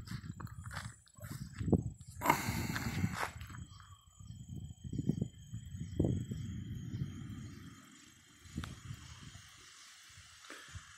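Thunder rumbling in several rolling swells that fade out near the end, with a faint steady high tone in the middle.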